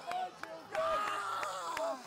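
Excited voices shouting and cheering close by in celebration of a win, with one long, drawn-out shout through the middle. A few sharp clicks sound among the voices.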